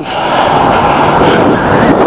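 Loud, steady wind noise buffeting the microphone of a moving bicycle camera on a gusty day.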